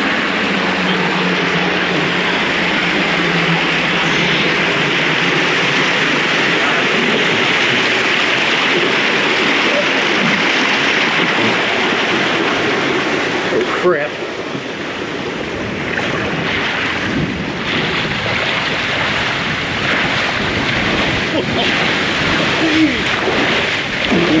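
Water rushing down a fibreglass body water slide, heard from the rider sitting in the flow: a loud, steady rush at first. About halfway through there is a brief knock, after which the sound turns uneven, with splashing and wind on the microphone as the rider slides down the chute.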